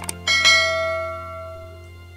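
A bell sound effect struck once about a quarter second in, ringing out and fading over about a second and a half. Just before it there is a short click, and a steady low hum runs underneath.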